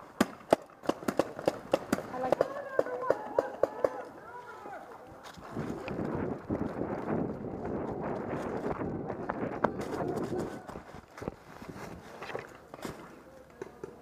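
Paintball markers firing a rapid string of sharp pops through the first few seconds. Then running footsteps crash through dry leaves and brush for several seconds.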